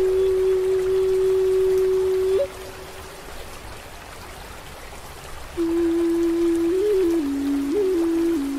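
Native American flute holding one long note that ends with a quick upward flick a little over two seconds in, over a steady hiss of running water and rain. After about three seconds of water alone, the flute comes back with a lower note decorated with short upward turns.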